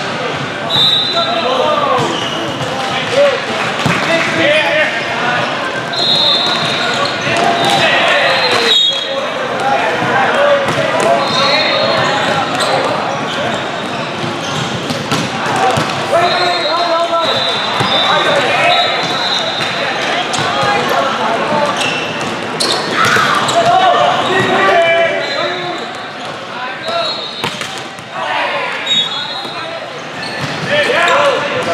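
Indoor volleyball match sound: many overlapping voices of players and spectators calling and chattering, sharp hits of the ball, and short high whistle blasts every few seconds, from the referees on this and the neighbouring courts.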